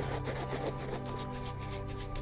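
Shoe brush buffing a leather dress shoe in rapid back-and-forth strokes, brushing freshly applied wax polish to a shine.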